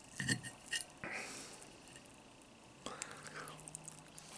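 Close-miked eating sounds: a few sharp clinks of a fork against the plate in the first second, a brief scrape, then soft mouth sounds as a forkful of corned beef and cabbage is taken near the end.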